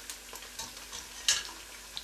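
Lamb pieces on the bone sizzling steadily in hot sunflower oil in a steel pot as they are lifted out, golden-browned. A short sharp clatter comes about a second in.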